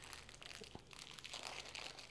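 Faint crinkling and rustling of small 3D-printer kit parts being handled by hand, with one light click a little before the middle.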